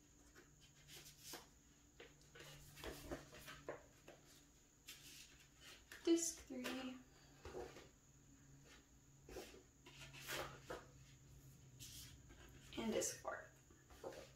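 Hands handling a DVD digipak: discs are taken off and pressed back onto the tray hubs and the card pages are moved, in a series of light clicks and rustles. There are a couple of brief murmured vocal sounds, one about six seconds in and one near the end.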